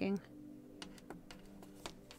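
A handful of light clicks and taps from tarot cards being handled at a table, the loudest near the end, over faint background music of held tones.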